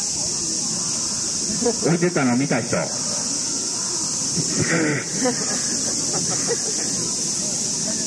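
Steady, high, hissing drone of a summer cicada chorus, with a voice speaking in short bursts about two seconds in and again around five seconds in.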